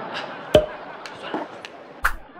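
A man's weary sigh, then a sharp, loud hit about half a second in, and another near the end as the scene cuts to a title card.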